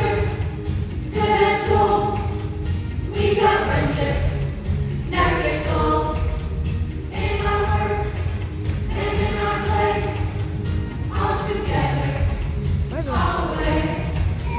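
A children's chorus singing a song together over an instrumental accompaniment, in phrases of about two seconds with short breaths between them.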